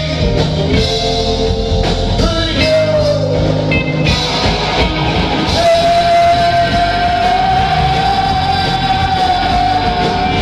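Rock band playing live: guitars, bass guitar and drums, with a harmonica played into the vocal microphone. From about halfway through, one long high note is held, rising slightly.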